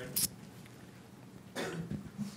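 A person coughing or clearing their throat once, briefly, about one and a half seconds in, after a short sharp click near the start; otherwise the quiet of a small room.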